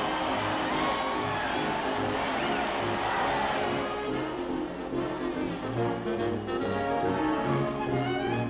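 Brass-led orchestral cartoon score playing a lively tune, with trombones and trumpets prominent over a steady bass line.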